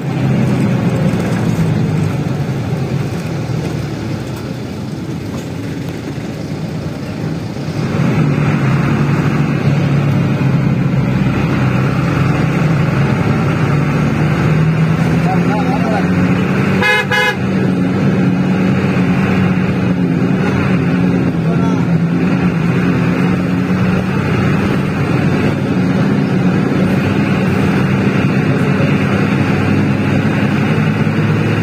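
Bus engine pulling hard, heard from inside the moving bus. It gets louder about 8 s in, and its note then climbs slowly as it gathers speed. A short horn blast sounds a little past halfway.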